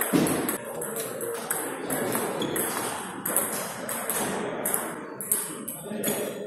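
Table tennis balls clicking off rackets and table tops in a quick, uneven series of sharp ticks, several a second, with a low thud at the very start.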